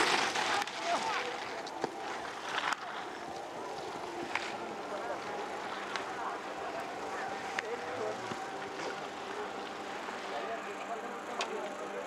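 Outdoor ski-race ambience: a steady hiss with faint distant voices and a few sharp clicks.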